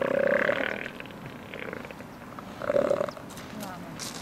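Southern elephant seals calling: two short, pulsing calls, the first lasting under a second right at the start and a shorter one a little under three seconds in.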